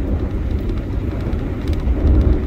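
A car driving along a road: steady low engine and road rumble.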